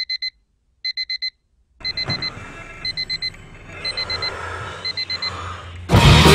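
Digital alarm clock beeping in groups of four quick high beeps, about once a second. About two seconds in, a noisy background comes in under the beeps, and loud rock music with guitar starts right at the end.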